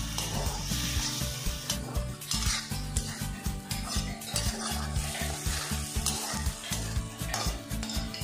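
A perforated steel spatula scrapes and clicks against a black iron kadai, stirring vegetables that sizzle in hot oil. The scrapes and knocks come repeatedly throughout, over a steady sizzle.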